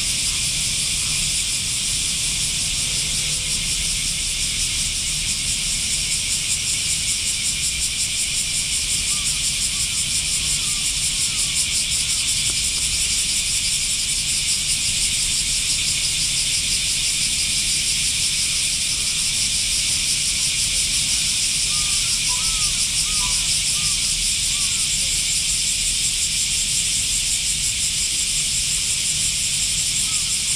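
A steady, loud cicada chorus, a dense high buzz, over a low rumble, with a few faint bird chirps about two-thirds of the way through.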